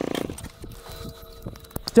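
Motorcycle engine idling, then switched off a moment in. A few light clicks and knocks follow.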